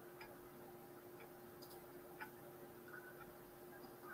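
Near silence: faint room tone with a few small, irregularly spaced clicks, the clearest a little over two seconds in.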